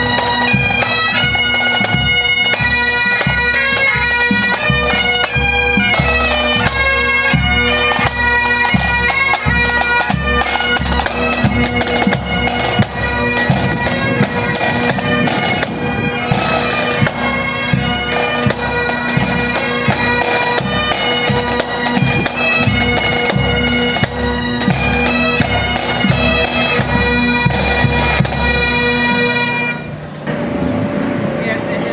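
Pipe band playing: Highland bagpipes with their steady drones under the changing chanter melody, and drums beating along. The music cuts off abruptly at the end.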